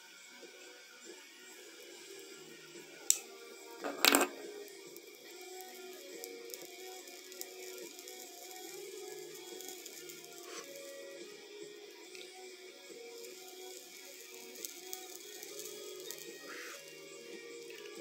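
A pocket lighter clicking as it is struck, sharply about three seconds in and again just after four seconds, then faint background music.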